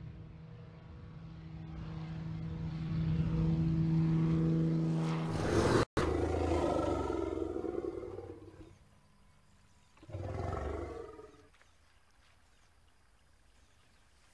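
Single-engine high-wing light aircraft flying low over a dirt airstrip, its propeller engine drone growing steadily louder as it approaches, then cut off abruptly about six seconds in. Then two calls from an African elephant, each about two seconds long, followed by faint outdoor ambience.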